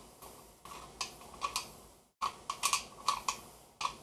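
A screw being backed out of a homemade wooden pinhole camera: a series of small, irregular clicks and taps of metal and wood, with a brief break a little past halfway.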